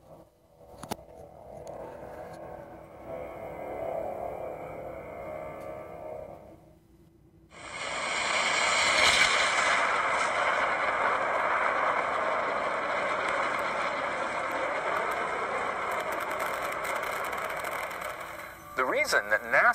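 After several seconds of quieter trailer soundtrack, the sound of an animated rocket launch cuts in suddenly about seven and a half seconds in: a loud, steady rush of noise that keeps going.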